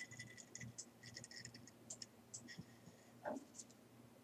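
Faint scratching and small clicks of coarse salt being rubbed by hand across a ceramic plate, with a sharp clink and short ring right at the start and a soft knock a little past three seconds in.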